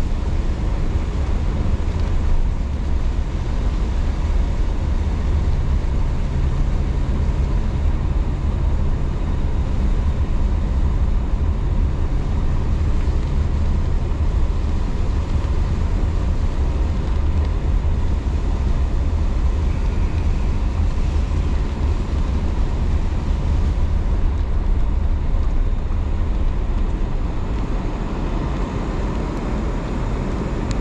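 Car driving on a wet dirt road, heard from inside the cabin: a steady low rumble of engine and tyres, with a low steady hum for about ten seconds in the first half.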